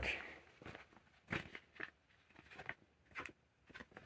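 Paper leaflets being handled and shuffled: faint, scattered crinkles and rustles of paper sheets.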